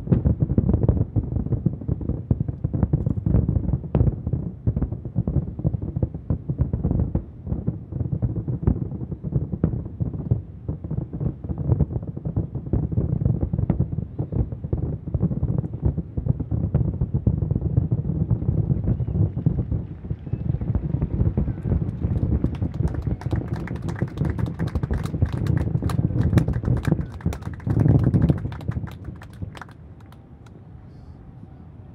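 A fireworks finale: a rapid, near-continuous barrage of shell bursts, heard from far off as a dense run of deep booms. Sharper crackling reports join in for the last several seconds before the barrage dies away just before the end.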